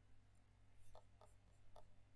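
Near silence with a few faint computer mouse clicks in the second half, over a low hum.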